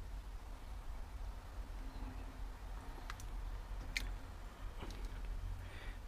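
Wooden spoon stirring thick goulash in a Dutch oven, with a few light clicks as the spoon knocks the pot, over a low steady rumble.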